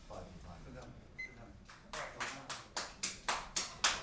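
A run of sharp hand claps, about four a second, growing louder over the last two seconds, with a short high beep just before them.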